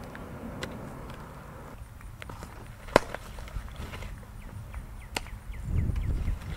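A single sharp smack of a softball impact about halfway through, over open-air background with a few faint knocks. Wind rumbles on the microphone near the end.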